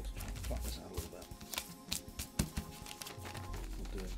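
Soft background music with held notes, over the crinkle of origami paper being folded and creased by hand, with a few sharp crackles of the paper.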